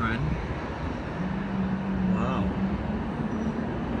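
Steady rumble of city traffic heard through an open high-rise window, with a low steady hum setting in about a second in.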